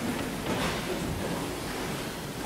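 Steady hiss of hall room noise, with no music or speech.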